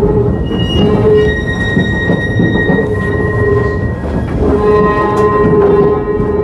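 Historic tram running along its track with a steady rattling rumble, its steel wheels squealing in long, steady high tones that come and go.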